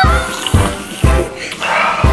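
Instrumental intro of a Thai pop song: a bouncy beat about twice a second under brass and other pitched instruments.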